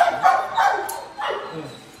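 A dog barking, loudest in the first second, with a sharp knock right at the start.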